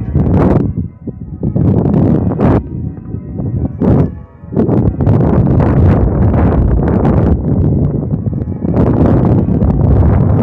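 Wind buffeting the microphone, a loud rumble with sudden gusts and knocks. Church bells ring faintly behind it.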